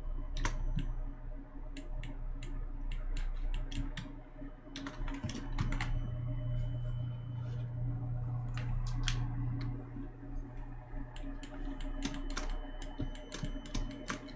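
Computer keyboard keys and mouse buttons clicking irregularly, in scattered single clicks and short runs, over a steady low hum.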